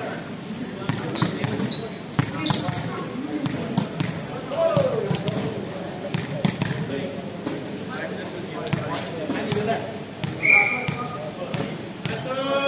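Volleyball players' voices talking and calling in an echoing sports hall, with a volleyball bouncing and knocking on the court floor in irregular thuds. A short sharp squeak sounds near the end.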